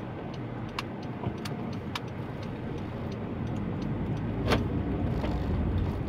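Car pulling away at low speed, its engine and tyre rumble growing louder after about four seconds as it speeds up. Regular ticking, a little under two ticks a second, runs through the first half, and a sharper click comes about two-thirds of the way in.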